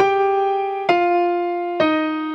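Digital piano playing a slow descending melody: three notes struck about a second apart, each ringing until the next.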